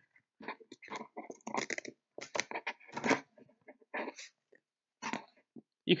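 Hook-and-loop fastener strap being pulled and fed through the slots of a battery holder plate: an irregular run of short scratchy rasps and rustles with brief pauses between them.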